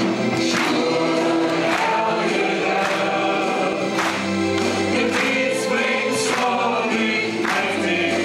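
A choir singing, with long held chords.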